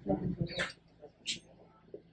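Brief, quiet snatches of speech separated by pauses, with no other distinct sound.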